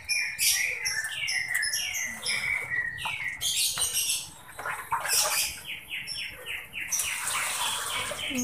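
A small bird chirping over and over: a string of short chirps that each fall in pitch, quickening into a rapid run past the middle.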